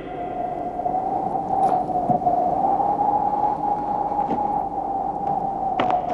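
One long held note from the film's soundtrack, a single pure tone that swells slightly in the middle, over the hiss and crackle of old film audio.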